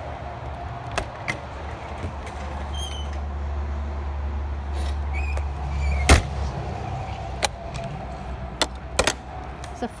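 Sharp metallic clicks and clanks from the latch and door of an aluminum horse trailer's stall door as it is worked and swung open, the loudest about six seconds in. A low rumble swells and fades under them.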